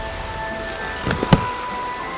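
Steady rain hiss under soft, held background music notes, with one sharp knock about a second and a third in.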